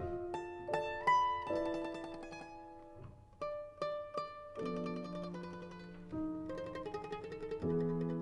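Mandolin and piano playing a slow, sparse passage: single notes and small chords ring out and fade one after another. About halfway, a lower note comes in and holds beneath them.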